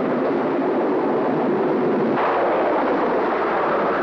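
Storm-at-sea sound effects: a loud, steady rush of wind and surf, which grows harsher and brighter with a wave crash about two seconds in.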